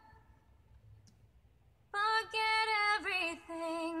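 A woman's solo singing voice: after a near-silent pause, she comes in about two seconds in with held notes that step from one pitch to the next.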